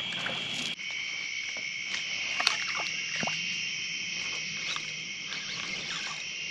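Night insects calling in a steady, high-pitched chorus, its pitch shifting abruptly under a second in, with a few faint clicks.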